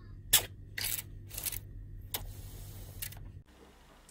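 Trigger spray bottle misting a tarantula enclosure: about six quick hissing sprays over a steady low hum, which drops away near the end.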